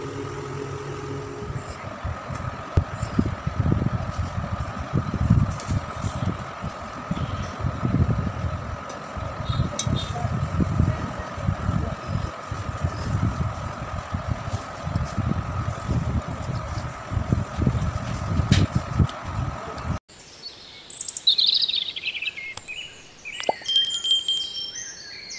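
Soft scraping and thudding of cooked biryani rice being scooped onto a steel plate and worked by hand, irregular and uneven, over a steady high hum. About twenty seconds in this stops suddenly and gives way to bird chirps, with a short high chime near the end.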